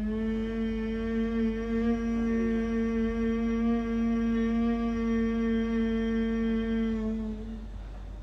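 A woman's long, steady hum on a single held pitch for about seven and a half seconds, fading out near the end. It is a humming breath exercise done to calm a racing heartbeat.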